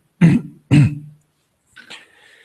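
A man clearing his throat in two short, loud bursts about half a second apart.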